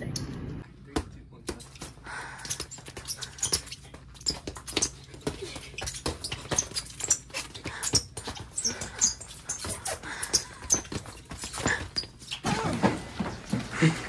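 Boxing gloves landing punches in quick, irregular smacks during a sparring scuffle, with a voice yelling near the end.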